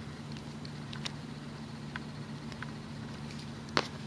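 Faint scattered clicks and light handling noise from hands working small rubber loom bands into a single-band chain, over a steady low hum. One sharp, louder click comes near the end.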